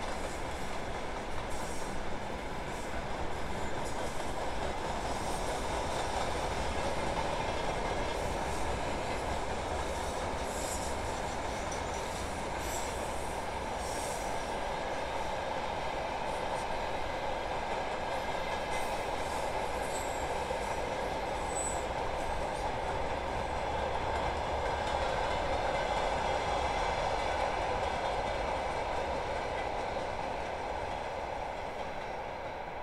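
Passenger train rolling slowly through a station: a steady noise of wheels on rails, with a few brief faint high squeaks in the second half.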